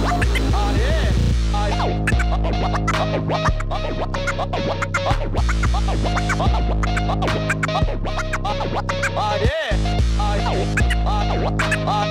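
Turntable scratching over a hip-hop/electronic beat with a heavy bass line: a vinyl record is pushed back and forth under the hand, giving quick rising and falling scratch sounds, cut in and out with the mixer. The bass drops out briefly about nine and a half seconds in.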